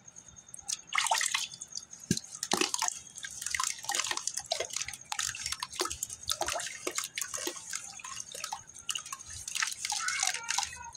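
Damp geru (red ochre) and sand being crumbled by hand over a bucket of water, the grains and small lumps dripping and splashing into the water in irregular bursts.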